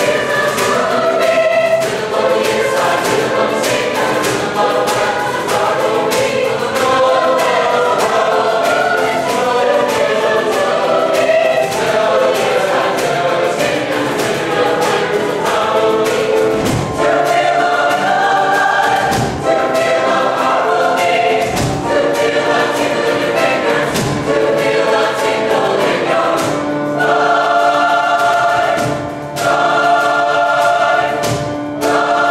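Large choir of men's, boys' and teenage voices singing a show tune in several parts at once, with short sharp hits keeping the beat, most of them in the first half.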